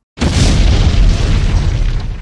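A loud boom like an explosion sound effect: it hits suddenly just after a moment of silence, with a deep rumble that slowly dies away.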